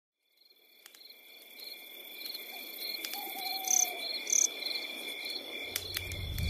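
Night ambience fading in from silence: crickets chirping steadily, with a few sharp crackles and a couple of brief bird calls near the middle.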